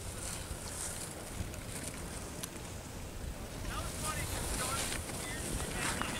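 Wind buffeting the camera microphone: a steady low rumble with hiss, a little louder from about four seconds in.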